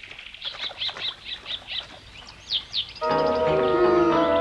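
Birds chirping in quick, short repeated calls. About three seconds in, background music of soft held chords comes in.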